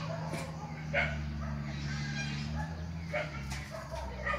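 A few short, sharp animal yelps, two near the start and two near the end, over a steady low hum.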